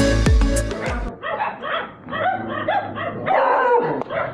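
Upbeat background music cuts off about a second in. A beagle follows with a quick run of barks and yips, about three a second.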